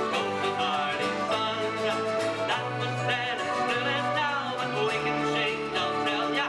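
Live folk band playing an instrumental passage with acoustic guitar, accordion and keyboard over a steady bass line.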